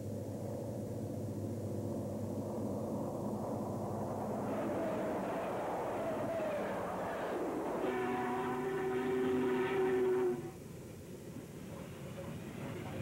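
Union Pacific diesel streamliner running past with a steady rumble of engines and wheels. From about four seconds in a horn sounds, falling in pitch, and near the end a steady multi-note horn chord holds for about two and a half seconds before cutting off suddenly.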